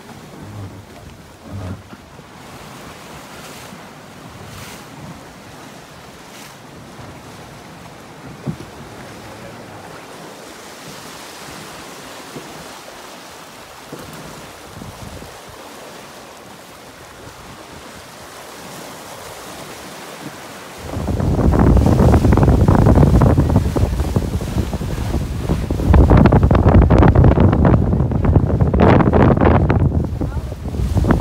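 Water rushing and splashing past the hull of a sailing yacht under way, with wind. About 21 seconds in, heavy wind buffeting on the microphone sets in and stays much louder.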